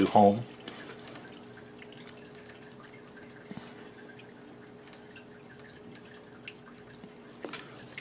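RCA-10 automated ultrasonic scanner's motor driving its carriage back to the scan's start position: a faint steady hum with light scattered ticks, stopping a little before the end.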